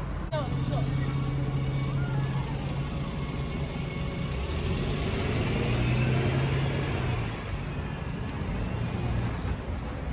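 Road traffic: a motor vehicle's engine running close by with a steady low hum, growing louder to about six seconds in and then easing off, over the noise of people's voices on the street.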